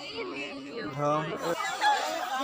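Several people talking and chattering, with overlapping voices.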